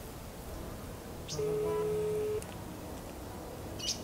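Telephone ringback tone: one steady beep about a second long, starting about a second and a half in, while the call rings at the other end. A short click comes near the end.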